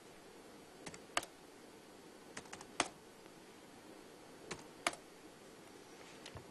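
Computer keyboard keys pressed in three short groups of clicks, a couple of seconds apart, over faint room hum.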